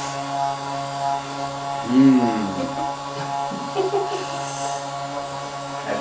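Electric vibration therapy machine humming steadily throughout, an even electric buzz. A brief vocal sound about two seconds in.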